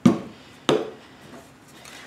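Two sharp knocks about two-thirds of a second apart: metal aerosol spray cans set down on the work table.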